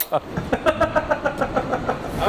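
Men laughing hard, a rapid run of voiced laughs.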